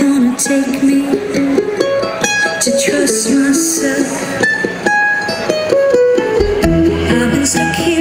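Live acoustic band music led by a mandolin playing a melody. A low bass line comes in about six seconds in.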